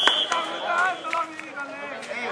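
Spectators chattering and calling out at a football match, with a short, high whistle blast right at the start and a sharp knock of the ball being kicked just after it.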